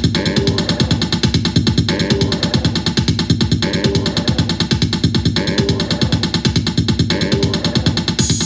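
Korg Volca Sample sampler playing a sequenced loop of rapid pulses, its phrase repeating about every two seconds.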